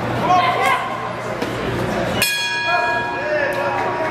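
Boxing ring bell struck once about two seconds in, ringing out and fading over a second and a half, signalling the end of the bout's final round. Spectators' voices are heard before it.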